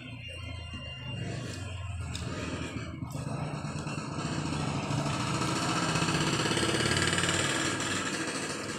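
Engine of a passing motor vehicle, growing steadily louder over several seconds and easing slightly near the end.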